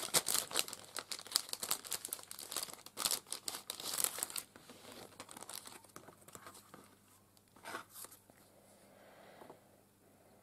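Clear plastic cellophane bag crinkling as sticker sheets are pulled out of it. Dense crackling for the first four seconds or so, then only a few faint rustles as the sheets are handled.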